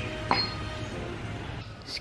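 A single light metallic clink about a third of a second in, ringing briefly, over steady low outdoor background noise.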